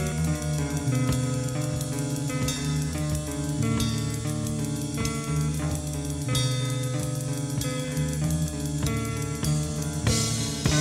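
Band music played from a cassette tape: sustained guitar and bass chords changing slowly over a drum kit with regular cymbal strokes.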